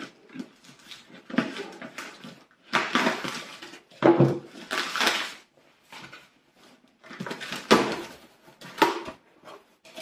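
Packing tape on a cardboard box being slit with a knife and ripped off: a string of loud ripping strokes, each about half a second to a second long, with cardboard and paper scraping and rustling between them.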